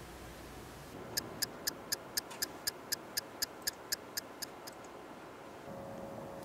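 A faint, even run of about fifteen sharp ticks, roughly four a second, which stops about five seconds in; a faint steady tone comes in just before the end.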